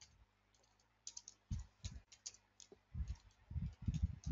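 Typing on a computer keyboard: a run of faint, irregular keystrokes that starts about a second in.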